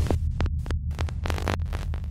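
Glitch-style logo sting: a low electronic hum pulsing under rapid crackles and bursts of digital static.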